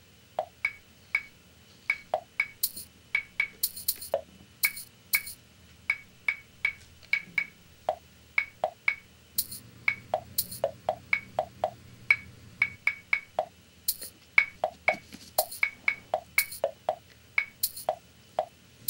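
A metal measuring spoon repeatedly clinking and tapping against the rims of dye powder jars and bottles while powdered dye is scooped and levelled: many sharp, short clicks at irregular intervals, about two or three a second.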